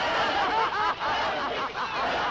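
A woman's wild, high-pitched laughter from a film soundtrack, one quick peal after another: the witch character laughing in a horror film.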